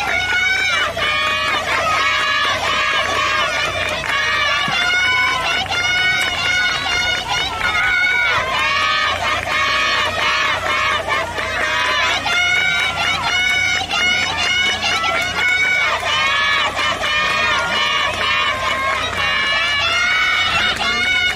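A group of high-pitched girls' voices shouting cheers for their team, overlapping and continuous, with no pause.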